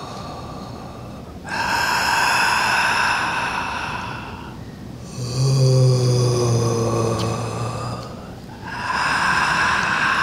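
A woman's voice making long, drawn-out "ooh" and "ah" sounds on audible breaths, like someone marvelling at an exhibit. A breathy, unvoiced "ah" starts about a second and a half in, a low voiced "ooh" comes about halfway through, and another breathy "ah" follows near the end.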